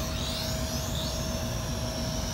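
Eachine E38 quadcopter's small brushed coreless motors running in flight: a high whine that rises and dips in pitch, over a steady hum.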